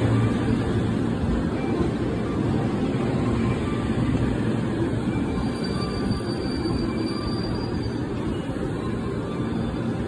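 A JR 5000 series Rapid Marine Liner electric train rumbling slowly along the platform and braking to a stop, with a faint high-pitched brake squeal about halfway through.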